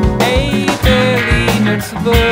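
Post-rock band music: guitars playing sustained chords over a steady drum-kit beat.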